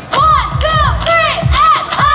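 A woman's high voice through the PA giving about four short wails that rise and fall in pitch, over the thumping kick drum of a live band.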